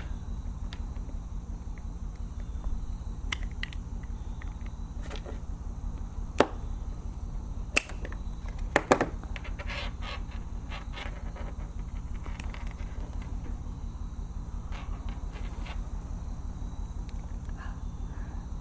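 Plastic housing of a USB-C to 3.5 mm headphone adapter being cut and pried apart with a utility knife and fingers: scattered small clicks and snaps, a few sharper ones around the middle, over a steady low hum.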